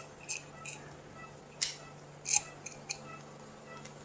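Several short, sharp clicks and snips from handling the EUS biopsy needle, syringe and specimen cap, over a steady low hum of equipment.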